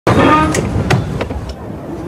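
A brief voice at the start, then four sharp knocks about a third of a second apart, growing fainter, over street background noise.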